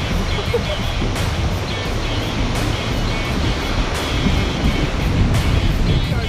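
Steady noise of surf and wind on the microphone, heaviest in the low end, with background music laid over it.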